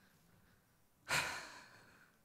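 A man's single sharp breath out, like a sigh, into a headset microphone about a second in, fading over a little under a second; quiet before it.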